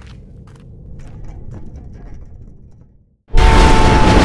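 A quiet, low rumbling space-ambience drone with a few faint clicks. A little over three seconds in, it cuts off and loud city street traffic starts abruptly, with cars rushing past and a steady held tone over the noise.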